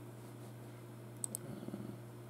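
Two quick sharp clicks, a tenth of a second apart, about a second and a quarter in, followed by a brief low murmur. A steady low hum runs underneath.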